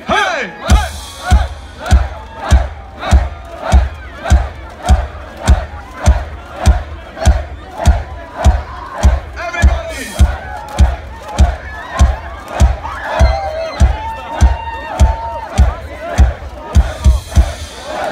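Steady bass-drum beat, nearly two thumps a second, under a large crowd chanting and shouting along in rhythm.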